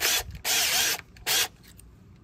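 Cordless drill's keyless chuck being spun and tightened onto a drill bit, a ratcheting mechanical whir in three short bursts.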